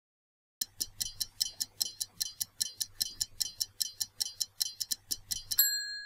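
Stopwatch ticking sound effect of a quiz countdown timer, about five ticks a second, starting half a second in. Near the end it stops with a single bell ding that rings on, marking that the time is up.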